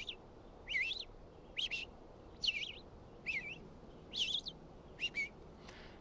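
Red-eyed vireo singing: a run of about seven short, slurred whistled phrases, each rising and falling in pitch, spaced a little under a second apart with brief pauses between them.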